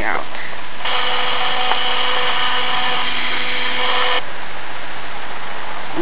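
Camcorder zoom motor whirring as the lens zooms in, a steady whine of several tones lasting about three seconds that starts and stops sharply, over a steady hiss.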